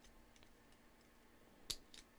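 Near silence with faint ticks of small plastic Lego pieces being handled, and one sharp click near the end as a piece is pressed or knocked against the model.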